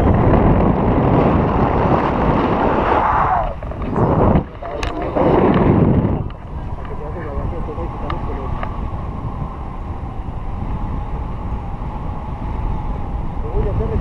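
Wind buffeting a handheld action camera's microphone in loud gusts for about the first six seconds. It then drops suddenly to a quieter, steady hiss.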